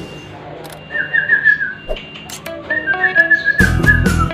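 A man whistling a wavering high note, joined about two and a half seconds in by music with plucked stepped notes and a heavy beat near the end.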